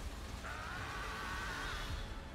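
Sci-fi trailer soundtrack: a low rumble under a wavering high tone that starts about half a second in and is held for over a second before fading near the end.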